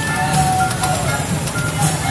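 Busy street procession: motorbike and vehicle engines running in a steady low drone, with music and voices over it.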